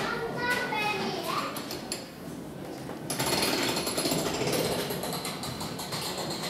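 Voices of people talking. About three seconds in, a steady, rapid mechanical rattle with a high whine starts and keeps going.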